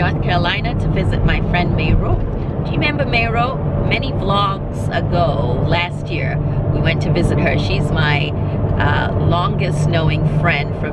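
A woman talking inside a moving minivan's cabin, over the steady low hum of the engine and road noise.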